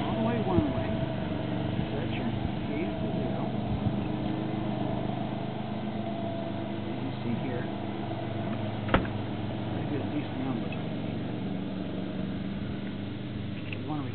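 Light metallic clicks from a GM 12-bolt rear's ring gear being rocked back and forth against its held pinion with a wrench, taking up the gear lash (about twelve thousandths of an inch) to read backlash on a dial indicator. The loudest is one sharp click about nine seconds in. A steady mechanical hum runs underneath.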